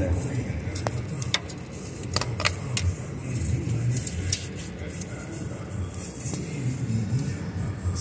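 A thin metal engine-oil dipstick being fed back down its tube in a Ford 4.6-liter V8, giving scattered light clicks and scrapes over a low steady rumble.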